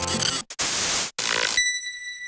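Logo sting sound effect: the credits music cuts off, then a loud hissing whoosh broken by two short gaps, ending near the end in a single bright ping that rings on and fades.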